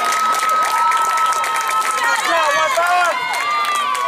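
Spectators and players cheering and shouting after a defensive out, many voices overlapping. One voice holds a long high call for about the first two seconds.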